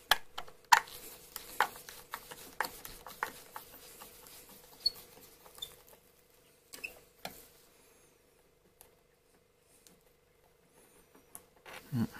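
A screwdriver turning screws out of a door frame: irregular small clicks and squeaks of the bit working in the screw heads. They thin out after about seven seconds.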